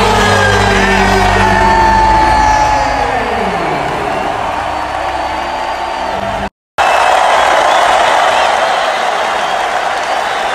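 Basketball arena crowd noise with music over the arena's sound system and a man yelling. A pitched sound glides steadily downward about three to four seconds in. After a sudden cut about six and a half seconds in, steady crowd noise alone remains.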